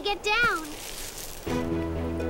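A short, high voiced utterance from a cartoon girl character at the very start, then background music with held chords beginning about one and a half seconds in.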